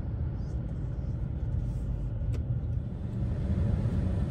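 Steady low road and engine rumble of a moving vehicle, heard from inside its cabin.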